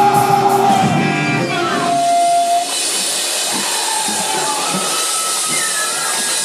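A melodic hardcore band's electric guitars and drums playing loud through the club PA, with a descending guitar slide. About two and a half seconds in the full band sound cuts off, leaving amplifier hiss with thin, wavering feedback tones ringing from the guitar amps.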